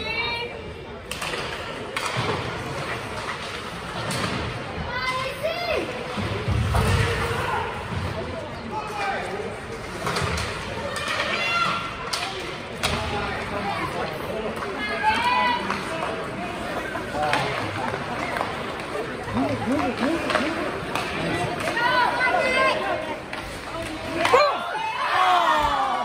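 Ice hockey arena sound: indistinct spectator voices and shouts over the rink's echoing background, with scattered sharp knocks of sticks, puck and boards.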